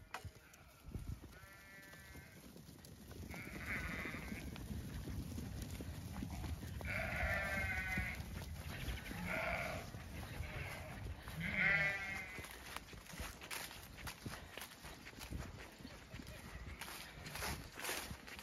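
Zwartbles sheep bleating, about six short quavering calls, the loudest near the middle, as the flock is let out and runs. Underneath is a low rumble of hooves trampling on grass.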